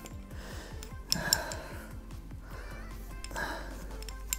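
Quiet background music with a steady, even beat. Two short, soft noisy sounds come through it, about a second in and near the end.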